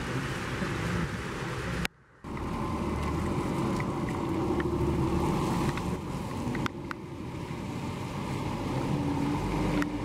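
Cars driving past on a wet road: a steady hiss of tyres on the wet surface over low engine noise. The sound cuts out briefly about two seconds in, then carries on.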